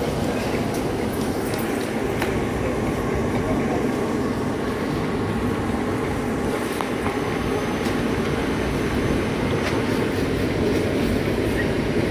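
Steady low rumbling background noise of an airport terminal, with faint voices mixed in.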